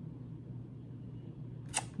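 Quiet room tone with a steady low electrical hum, and a single short click near the end.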